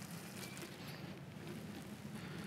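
Water pouring out of a Jetboil Minimo pot through the strainer holes in its lid, a faint, steady trickle and splash.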